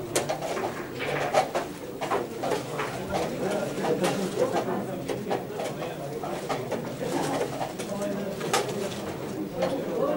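Low, indistinct murmur of voices, with a few sharp clicks scattered through it, typical of chess pieces being set down and clocks being pressed at blitz boards.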